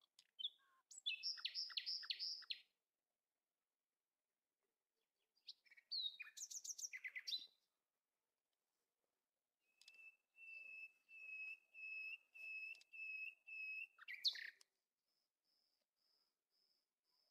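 Songbird song in three separate phrases: a fast trill about a second in, a quick varied phrase around six seconds, then a run of repeated clear whistled notes at about two a second, ending in a sharp higher note.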